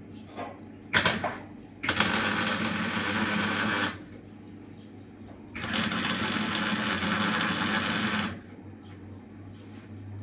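Electric arc welding on steel: a brief arc strike about a second in, then two steady weld runs of about two and three seconds with a short pause between.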